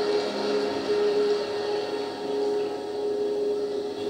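A steady held tone over a constant hiss and murmur from a large seated audience.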